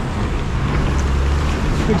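Low, steady drone of the bus's and the tractor's diesel engines at a crawl, with wind rushing over the microphone held out of the bus window.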